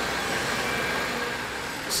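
Small wheel loader's engine running steadily at a construction site, with a brief high hiss near the end.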